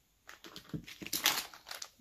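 Clear plastic bag of polymer clay disc beads crinkling as it is picked up and handled, with the beads shifting inside. The handling is an irregular run of crackles that starts a moment in.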